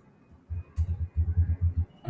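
Typing on a laptop keyboard: a quick run of about ten dull keystroke taps.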